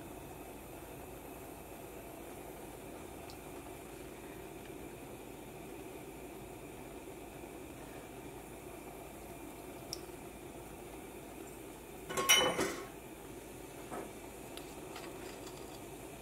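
Metal spoon clattering briefly against a ceramic bowl about twelve seconds in, with a couple of light taps around it, over a quiet, steady room hum.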